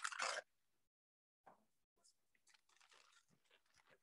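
A short crisp crinkle from a plastic disposable piping bag being handled around its metal piping tip, lasting about half a second at the start, then near silence.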